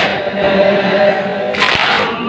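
A mourning chant (noha) with a held, sustained sung voice. About one and a half seconds in there is a single sharp slap, one of the regular beats of chest-beating (matam) that recur about every two seconds.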